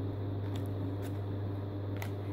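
Room tone dominated by a steady low electrical hum, with one faint tick about half a second in.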